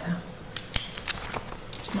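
Sheets of paper being handled and shuffled on a table near the microphones: a run of short rustles and clicks, irregularly spaced.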